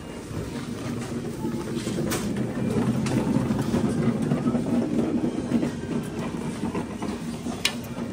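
Supermarket background noise with a rumbling rattle that swells through the middle and eases off. A sharp click comes near the end.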